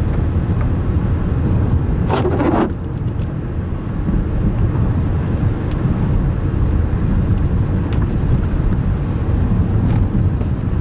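Steady low rumble of a Ford car's engine and tyres heard from inside the cabin while it drives along at low speed. About two seconds in there is one brief, louder noise lasting around half a second.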